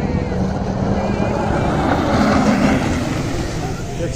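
A watercraft engine running steadily, with rushing water, growing louder a little past the middle.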